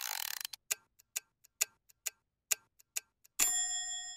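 A cartoon sound effect: a short shimmering swish, then a run of clock-like ticks, two to three a second and uneven in loudness, ending in a bright bell-like ding near the end.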